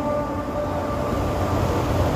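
A muezzin's call to prayer (adhan) over the mosque loudspeakers, in the pause between phrases: the last held note dies away in a long echo over a low rumble of background noise.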